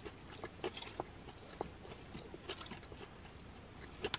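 Faint, close chewing of a mouthful of salad: small irregular crunches and wet mouth clicks scattered through.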